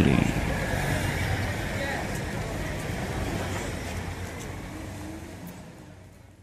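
Steady noisy background bed, with faint voices in it, fading out gradually at the tail of a radio station promo.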